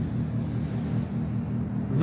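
A steady low hum with a faint rumble under it.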